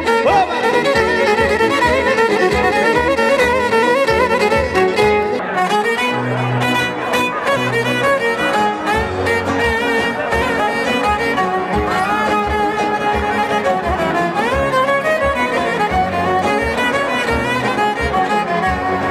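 A live band playing an instrumental Greek folk dance tune, with a bowed-string melody over a steady, even beat.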